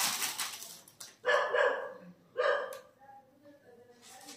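A dog barking twice, two short barks about a second apart, after the rustle of cloth and plastic being handled fades out.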